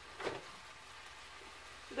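Faint, steady sizzle of chicken pieces searing in a hot cast-iron grill pan, with one brief soft noise about a quarter second in.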